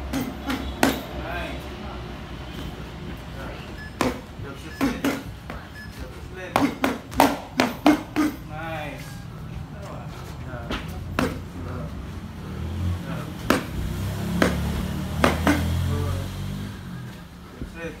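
Irregular sharp slaps and knocks from a boxing defence drill, as foam pool noodles are swung at a boxer's gloves, with a quick run of them about seven seconds in.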